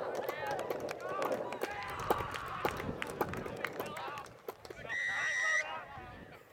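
Spectators shouting and cheering as a player breaks through on the run. Near the end comes a single steady referee's whistle blast of about half a second, signalling the try.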